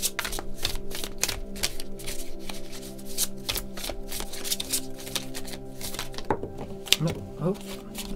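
A tarot deck being hand-shuffled: a continuous run of quick card snaps and flicks. Near the end there is a sharper snap as several cards jump out of the deck.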